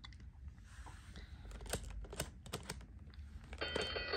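Plastic number dial of a LeapFrog Twist & Shout Division toy being twisted, a run of irregular clicks. Near the end the toy starts an electronic tone.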